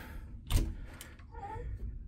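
A sharp click or knock about half a second in, with a fainter click a moment later: a cabin bathroom door being opened.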